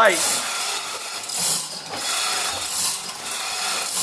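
Hand-chain hoist being worked to lift a wooden boat hull: the chain rattles and the ratchet clicks in a steady run.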